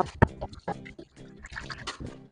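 Dishes knocking and clattering against a stainless steel sink as they are washed by hand, several sharp knocks, over background music.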